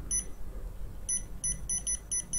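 Touchscreen ventilation controller beeping as its up button steps the hour setting: one short high beep, then from about a second in a fast run of beeps, about five a second, as the hour keeps advancing.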